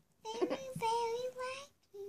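A child singing quietly, a couple of held notes at a near-steady pitch, ending with a short note.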